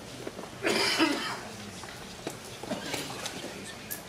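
A single cough about a second in, followed by a few faint clicks.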